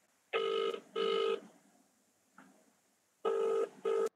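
Telephone ringing in a double-ring pattern: two short rings, a pause of about two seconds, then two more, cut off suddenly right at the end.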